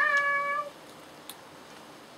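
A single short, high-pitched vocal call at the very start, lasting under a second: a quick rise, then held on one pitch.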